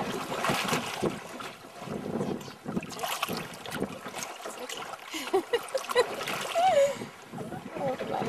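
Irregular splashing and sloshing of water at a boat's side as a dolphin surfaces against the hull and is touched by hand.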